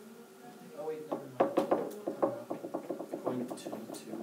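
A quick run of light clicks and taps, several a second, starting about a second in, over faint indistinct voices.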